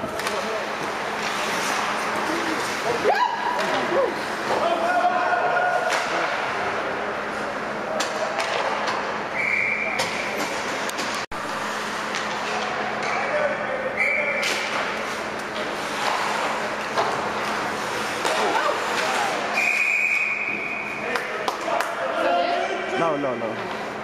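Ice hockey game sound in an echoing indoor rink: a steady din of shouting voices over a low hum, with frequent sharp clacks of sticks and puck. A short, steady high tone sounds three times.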